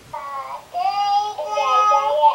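A young child singing in a high, sing-song voice, holding drawn-out notes.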